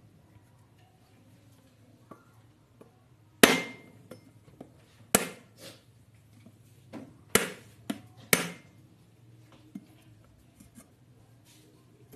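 A whole husked coconut held in the hand and struck with a knife to crack its shell: four sharp knocks starting about three seconds in, one to two seconds apart, with a few lighter taps between.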